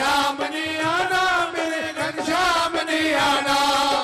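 Punjabi devotional bhajan music continuing: a sung, chant-like vocal line that rises and falls over a steady low accompanying note.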